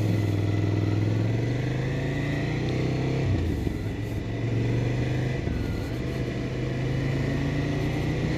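Ducati Scrambler's air-cooled 803 cc L-twin engine pulling the bike along at road speed, heard from the rider's position. The engine note climbs a little, drops sharply about three seconds in as if at a gear change, then holds steady.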